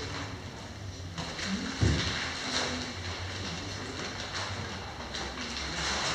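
Room noise with a steady low hum, papers and document folders being shuffled and handled, and one dull thump about two seconds in.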